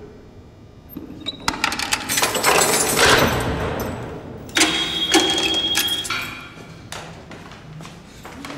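Heavy steel cell door clanking: two loud metallic bangs, about one and a half and four and a half seconds in, each ringing out with an echo, with a brief high squeal along with the second.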